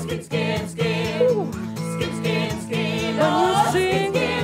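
Music: a studio-recorded 1982 song playing steadily with a regular beat, in a stretch between sung lyric lines.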